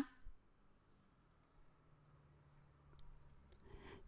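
Near silence: room tone with a faint low hum, and a few faint short clicks about three seconds in.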